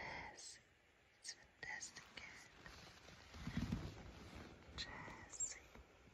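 Quiet whispering close to the microphone, with scattered soft clicks and rustles and a louder low rub about three and a half seconds in.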